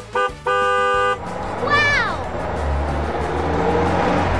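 Cartoon toy-bus horn sound effect honking three times, two short beeps and a longer one, then a falling whistle-like glide and a rumbling driving noise as the bus rolls out, over background music.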